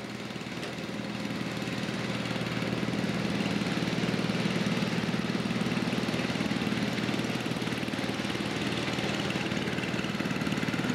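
Small riding lawn mower engine running steadily as the mower drives across the grass, growing louder over the first few seconds and then holding steady.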